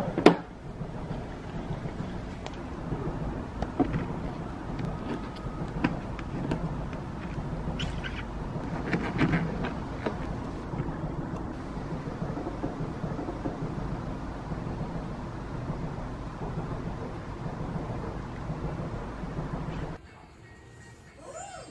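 A metal fork clicking and scraping against a clear plastic dessert container, in a few scattered sharp clicks. The loudest comes just after the start. Under it runs a steady low rumbling background noise.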